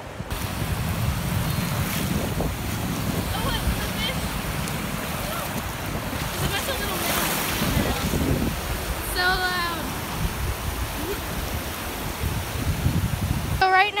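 Ocean surf washing up the beach, with strong wind rumbling on the phone's microphone. A voice calls out briefly about nine seconds in.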